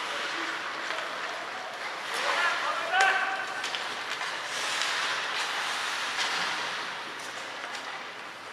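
Ice hockey rink sound: skates scraping on the ice and spectators' voices over a steady arena hiss, with short shouts and one sharp crack, like a stick or puck hitting, about three seconds in.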